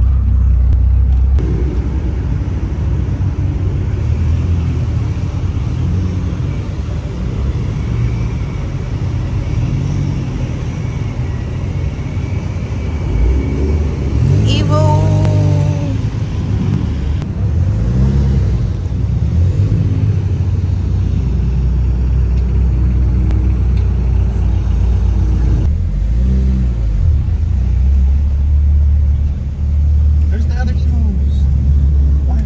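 Car engines running with a steady low rumble, and an engine revving up and back down briefly about halfway through.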